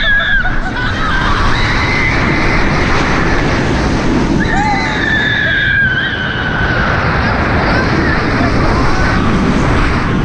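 Steady rushing wind blasting the camera microphone on a moving Banshee inverted roller coaster train, with riders screaming. One long scream comes about halfway through.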